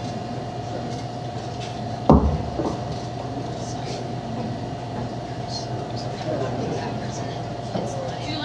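Steady electrical hum from the stage amplifiers under a faint murmur of voices in the room. A sharp low thump comes about two seconds in, followed by a smaller one about half a second later.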